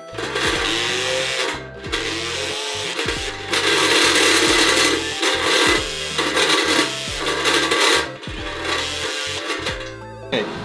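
Background music over the intermittent whir of a small handheld power tool working sheet metal. The tool is loudest in two spells, about four seconds in and again about seven seconds in.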